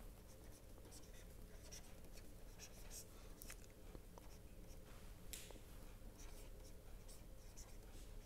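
Faint scratching and tapping of a stylus writing on a pen tablet in short strokes, over a low steady hum.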